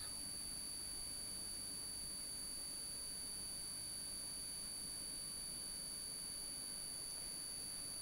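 Faint, steady high-pitched electronic whine: a few thin unchanging tones over a low hiss. No marker strokes or other events stand out.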